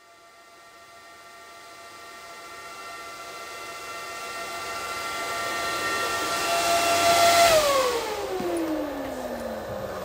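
Intro sound effect: a whistle-like chord of several steady tones swelling louder for about seven seconds, then sliding far down in pitch and fading away.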